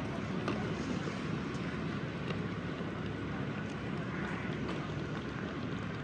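Steady outdoor rumble and hiss of wind on the microphone, with a few faint clicks.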